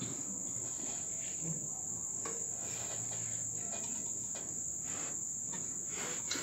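A steady, high-pitched continuous whine over faint background hiss, with a few soft clicks.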